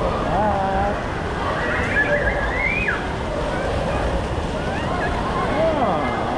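Steady hiss of splash-pad water jets spraying from a fountain toy, with voices calling out over it, one rising high about two seconds in.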